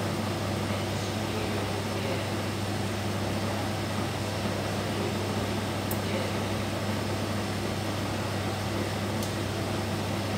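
Steady mechanical hum of a running NOx gas analyzer and its surrounding equipment, with a strong low drone. A couple of faint ticks come about six seconds in and again near the end, as the analyzer switches between its NO and NOx measuring phases.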